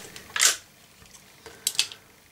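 A .357 revolver being handled: a short rustling hiss about half a second in, then two quick light metallic clicks a little after one and a half seconds.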